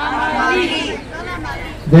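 Speech only: several people's voices talking at once, with no clear words.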